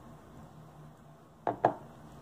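Two sharp clicks in quick succession about a second and a half in, as a steel-capped fountain pen is picked up and handled.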